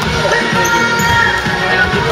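Basketball bouncing on a wooden gym floor during play, with music playing over it.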